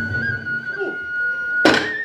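Kagura music: a bamboo flute holds one long steady high note, then a single sharp drum stroke near the end closes the piece.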